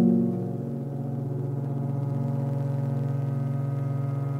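Ambient neoclassical instrumental music: a low keyboard chord struck right at the start and then held as a steady sustained tone.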